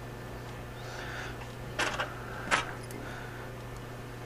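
Two sharp metallic clicks, a little under a second apart, as a small hand tool is handled against a metal rebuildable atomizer, with a soft rustle of handling just before.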